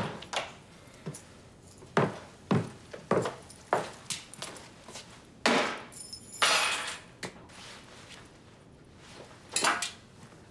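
Footsteps on a hard floor, about one every half second, then a longer clatter about six seconds in as a small tossed object lands. One more knock near the end.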